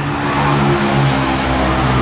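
A motor vehicle engine running steadily, its hum growing a little louder.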